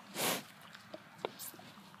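A cow's short, noisy puff of breath close by, just after the start, then a few faint wet clicks of its lips and tongue as it mouths and licks a finger.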